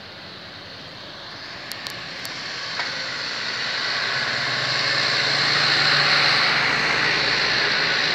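A motor vehicle passing close on the road: its engine and tyre noise swells over several seconds and is loudest near the end.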